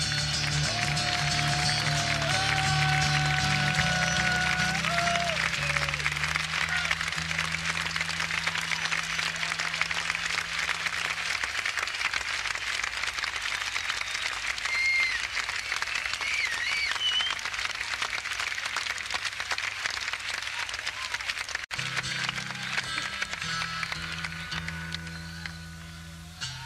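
A live concert audience applauding and cheering, with a couple of whistles in the middle, as the band's last held notes, including harmonica, die away at the end of a song. About 22 seconds in, the band starts playing again quietly while the applause fades.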